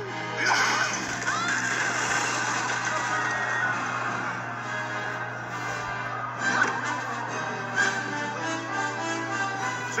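Film score music playing, with a steady low hum underneath.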